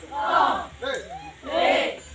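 A large group of young women shouting together in short bursts as they strike in a stick-fighting drill: two loud shouts with a shorter one between.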